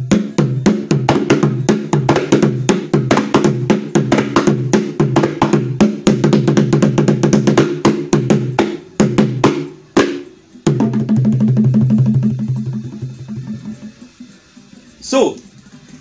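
A drum played in a fast, steady rhythm of several strokes a second over a held low tone. It breaks off about ten seconds in, starts again, and fades out shortly before a brief falling vocal sound near the end.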